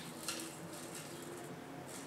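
Quiet room with faint handling noises from a glass jar held in the hand, brief ones about a quarter second in and again near the end.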